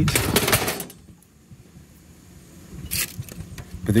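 Clattering and clicking of a scrap circuit board being handled against a plastic storage bin for about the first second, then quiet apart from a short rustle about three seconds in.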